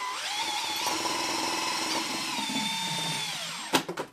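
Cordless drill spinning a homemade ABS-pipe spray can shaker loaded with a drink, its motor giving a steady whine. Near the end the whine drops in pitch and winds down, followed by a sharp click.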